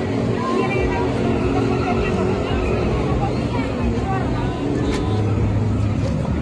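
Busy city street ambience: many people's voices chattering over steady traffic noise, with a vehicle engine running close by in the second half.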